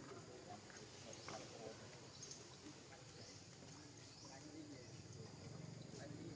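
Faint outdoor ambience with soft, short high chirps about once a second in the first half, and faint low murmurs underneath.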